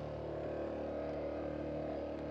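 Suzuki DR-Z250's single-cylinder four-stroke engine idling steadily with the bike lying on its side after a low-speed tip-over: the engine has not stalled.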